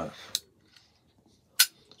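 Brass Zippo lighter fitted with a double-jet torch insert: two sharp metallic clacks about a second and a quarter apart, the second louder, as the lid is snapped shut and the lighter handled.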